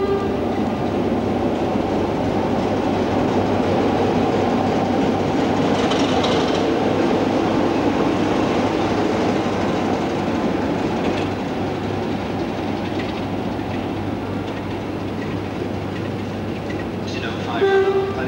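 British Rail Class 33 diesel-electric locomotive running steadily, a continuous engine rumble with a low hum, and a brief pitched tone near the end.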